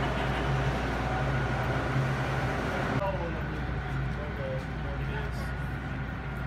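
A bus engine idling with people talking over it. About halfway through it cuts to a quieter open-air sound with faint voices.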